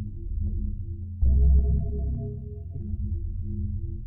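Dark ambient synthesizer music from a Waldorf Blofeld and a Korg Wavestation SR: held tones, with a new chord and a deep bass note coming in about a second in, and scattered sharp clicking hits.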